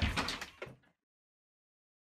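A loud, sudden thump with some rattling after it, then the sound cuts off abruptly before the first second is out, leaving dead silence.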